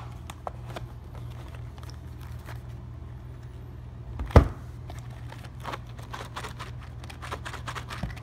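A paperboard poker chip box full of chips being handled on a table: small scattered taps and scrapes, with one sharp knock a little past the middle. A steady low hum runs underneath.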